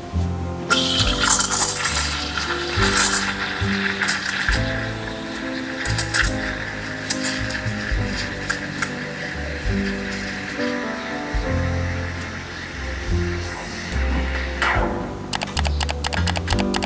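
La Marzocco Linea Mini's steam wand steaming milk in a stainless pitcher: a steady hiss that starts about a second in, lasts about 14 seconds and shuts off near the end. Background music plays throughout.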